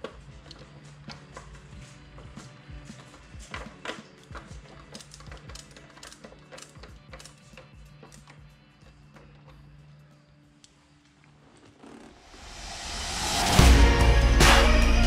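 Small scattered clicks and knocks of a hand tool and fingers working screws into the plastic inner-fairing bezel of a Harley-Davidson Road Glide Special, over a faint steady hum. Music swells in over the last two seconds and becomes the loudest sound at the end.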